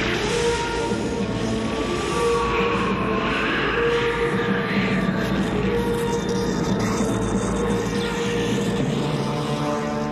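Film score music with long held notes, mixed with a noisy, rushing sound effect that swells in the middle and rises in pitch.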